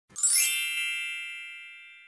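A single bright chime sound effect, struck just after the start and ringing with several high tones that fade away over nearly two seconds.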